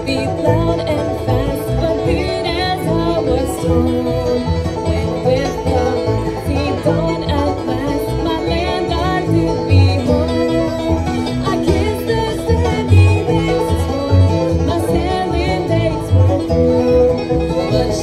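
Live acoustic bluegrass band playing: banjo, acoustic guitar, fiddle and upright bass, with a woman singing lead.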